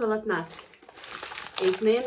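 Crinkling plastic candy bags being handled, between spoken words.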